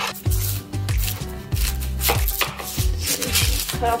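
Kitchen knife knocking on a wooden cutting board as an onion is trimmed and peeled, several irregular strokes. Background music with a deep bass line plays underneath.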